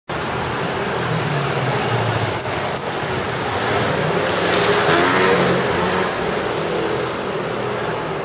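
Street traffic in a narrow street: a motor vehicle's engine runs close by, building to its loudest about halfway through and then easing off, over general street noise.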